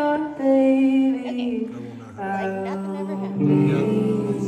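Live band playing: electric guitar and bass under long held sung notes that step down in pitch, with a short dip about two seconds in before the next chord comes in.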